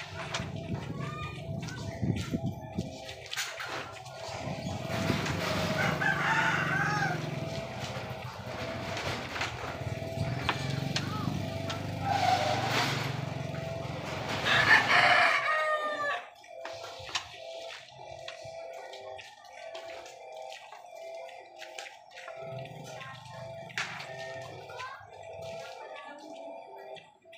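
Rooster crowing several times, loudest about six seconds in and again between twelve and fifteen seconds in, over a steady low background hum, with scattered sharp clicks.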